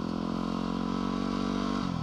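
A 2010 Yamaha WR250R's 250 cc single-cylinder four-stroke engine running at steady revs while the dual-sport bike is under way, then the revs fall just before the end.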